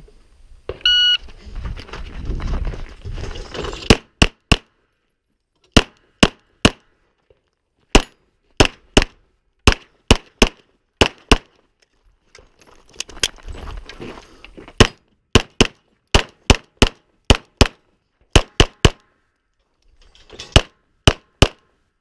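Electronic shot timer beeping once, about a second in, then pistol shots fired in quick pairs and short strings, about thirty in all, with pauses of one to three seconds between strings.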